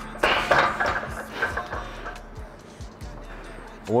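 Heavy, breathless panting from a lifter straight after a hard set of barbell back squats, loudest in the first second and then easing off, with background music underneath.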